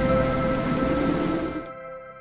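Animated logo sting: a rushing, rain-like noise swell over a held musical chord, fading as it goes. The noise cuts off sharply near the end while the chord rings on and dies away.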